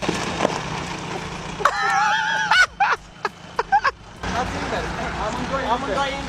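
Voices from the clip shouting and talking outdoors over a low engine hum, with a burst of high-pitched shouting about two seconds in and several sharp knocks right after it.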